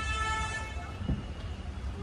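A car horn held on one steady note, cutting off under a second in, over a low background rumble.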